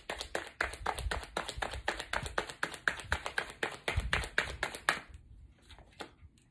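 Tarot deck being shuffled by hand: a quick run of card flicks and snaps, about six a second, stopping about five seconds in.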